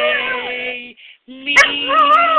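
A dog howling along with a person singing the notes of a scale. The dog's howl wavers in pitch over the person's steady held note and breaks off about a second in. A slightly higher sung note follows, and the howl comes back abruptly about one and a half seconds in.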